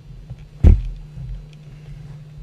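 A single sharp, loud low thump about two-thirds of a second in, with softer low rumbles and bumps around it over a faint steady hum.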